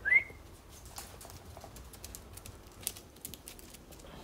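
A short, quick rising whistle right at the start, a person whistling to call the dogs. It is followed by faint, scattered light clicks.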